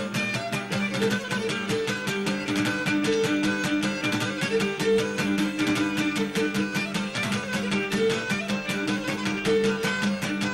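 Cretan dance music: a bowed string melody over a Cretan lute (laouto) strumming a fast, even rhythm.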